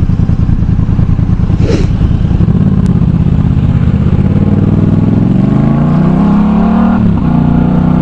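Yamaha MT-07's parallel-twin engine through an aftermarket Arashi exhaust, idling with an even pulse, then rising steadily in pitch as the bike pulls away from a stop. The note drops suddenly at a gear change about seven seconds in and carries on.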